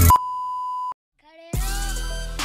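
The music cuts off and a single steady test-tone beep plays with a colour-bars card, lasting just under a second. A moment of silence follows, and music starts again about a second and a half in.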